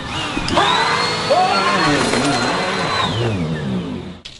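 Upright vacuum cleaner motor switching on with a quickly rising whine, running at a steady high pitch, then winding down about three seconds in. A voice cries out over it.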